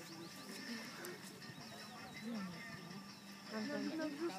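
Indistinct distant voices with small birds chirping.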